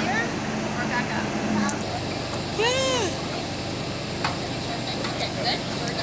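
People's voices murmuring and calling out as a group arranges itself for a photo, over steady background noise; one high, rising-and-falling call stands out about three seconds in.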